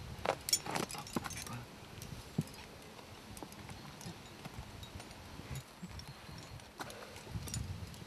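A climber scrambling up a granite boulder: scattered scuffs and knocks of boots and hands on the rock, with the light clink of carabiners on the harness, busiest in the first second and a half.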